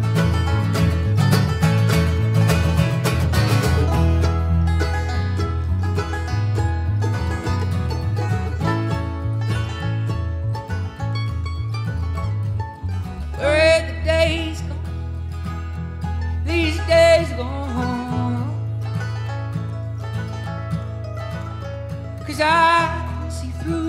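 Live bluegrass band playing banjo, mandolin, acoustic guitar and electric bass, busy and driving for the first few seconds, then settling back. A voice sings two short phrases about halfway through.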